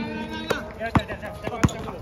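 A basketball being dribbled on a hard court: three sharp bounces about half a second apart, with faint voices behind.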